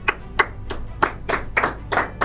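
Thin, sparse hand clapping, about three even claps a second, as if from only one or a few people.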